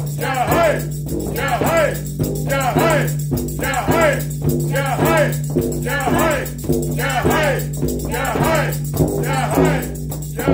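Sufi dhikr: a group chanting a short phrase over and over, about once a second, over a steady low drone. A large frame drum and a rattling jingle keep time.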